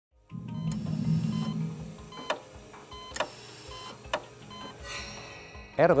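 Opening music: a low held chord that fades, then three sharp struck accents about a second apart and a swell near the end.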